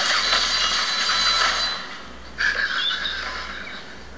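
Movie trailer sound effects: a hissing rush that drops away about two seconds in, then a second swell that fades out.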